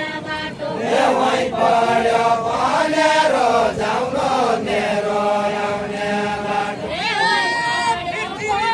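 A group of voices chanting a Deuda folk song, the call-and-response singing of a linked-arm circle dance from far-western Nepal. It is sung in long, held notes that bend slowly in pitch.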